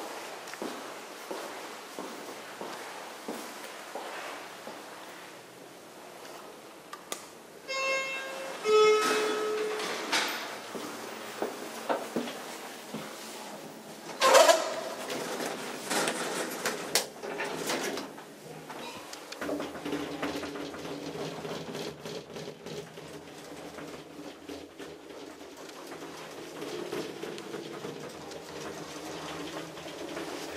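Office elevator: a two-note arrival chime, higher note then lower, about eight seconds in, followed by door sounds and a loud clunk, a few clicks as a floor button is pressed, and from about twenty seconds on the steady hum of the car travelling.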